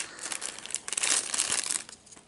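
Small gift wrapping crinkling and rustling in quick irregular handfuls as it is pulled off a necklace by hand, stopping just before the end.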